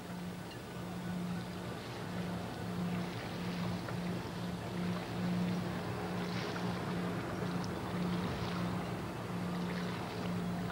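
Steady low mechanical hum with a slight pulse to it, over a haze of outdoor background noise.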